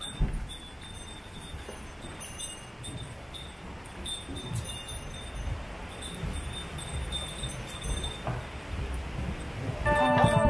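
Low, uneven rumble and shuffling of passengers walking onto and boarding an aerial ropeway gondola, with one heavier thump just after the start.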